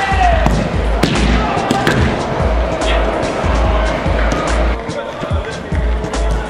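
Music with a heavy, steady bass beat and a vocal line.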